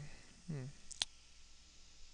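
A single sharp computer mouse click about a second in, with a faint tick just before it.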